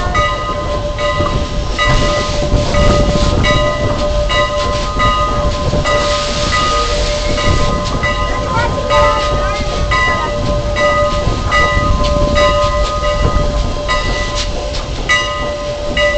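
A locomotive bell ringing steadily, a stroke a little more than once a second, over the low rumble of a train rolling out of the station.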